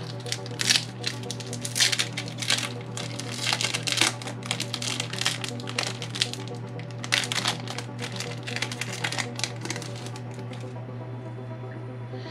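Foil Yu-Gi-Oh! booster pack wrapper being torn open and crinkled by hand: a busy run of sharp crackling rustles that stops near the end.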